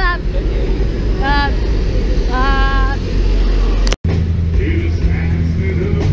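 Live band playing, with a singer holding three wavering notes over a heavy, muddy low end. About four seconds in the sound cuts to another stretch of the band, with steady bass guitar notes.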